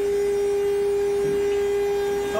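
A machine in a sterilizing room giving out a steady, single-pitched whine with a fainter, higher overtone. It is more sound than the machine is expected to make.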